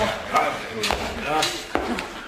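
Short fragments of voices with two sharp knocks, the second one louder near the end.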